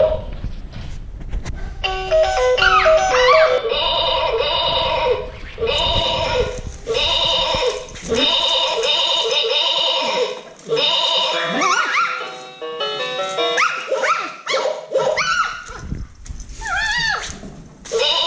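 A children's electronic music play mat playing short electronic tunes and sound effects, set off in stop-start bursts as puppies step and paw on its keys. Some of the bursts carry quick sliding notes among the steady melody tones.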